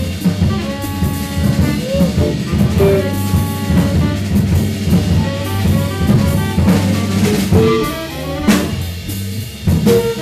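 Live jazz combo of guitar, Hammond organ and drum kit playing a hard-bop blues. The guitar carries the line over sustained organ chords and a busy snare with rimshots, and the tenor saxophone is silent.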